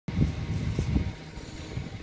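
Low, gusty rumble of wind on the microphone, loudest in the first second and easing after that.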